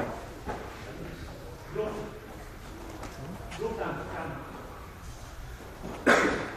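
Indistinct talking from people in a gym hall, in short low-level phrases, with a brief knock at the very start.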